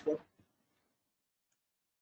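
A word of speech trails off, then near silence with a single faint mouse click about a second and a half in, advancing the presentation slide.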